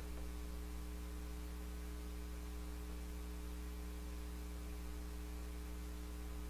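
Low, steady electrical mains hum with a faint hiss, picked up by the recording's microphone chain.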